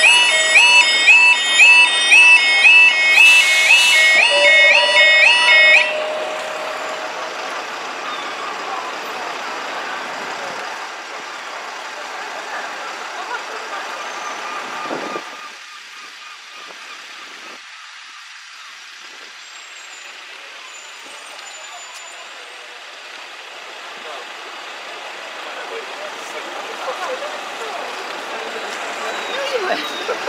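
Level crossing warning alarm warbling in a rapid repeating pattern of high tones, then cutting off after about six seconds. After that comes a steady rush of outdoor noise that drops in level around the middle.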